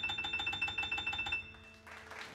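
Ravenscroft 275 sampled grand piano from the UVI iOS app, played from a keyboard controller: a fast high-register tremolo of rapidly repeated notes over a held lower note. It stops about one and a half seconds in and rings away.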